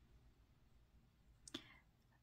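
Near silence: room tone, with one faint, short click about one and a half seconds in.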